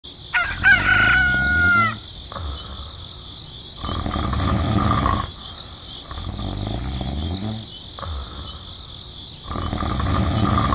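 Farmyard ambience: a rooster crows once near the start over a steady chirping of insects, followed by other, rougher animal calls about four seconds in and again near the end.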